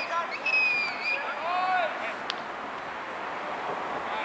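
Players shouting to each other across a sports field during a training drill, with a long high call and then a shorter rising-and-falling call in the first two seconds. A single sharp smack comes a little after two seconds, over a steady outdoor hiss.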